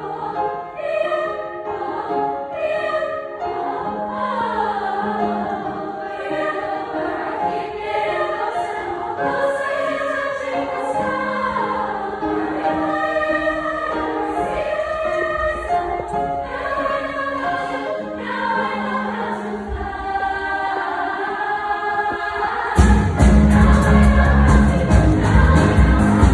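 Girls' choir singing a song in harmony on stage. About a second before the end the sound turns suddenly louder, with a heavy bass coming in.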